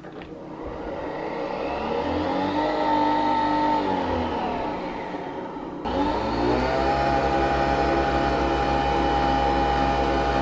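Nespresso Vertuo coffee machine spinning the capsule to brew: the motor whirs up in pitch over the first few seconds, winds down, cuts out abruptly about six seconds in, then spins straight back up to a steady high whir as the coffee starts pouring.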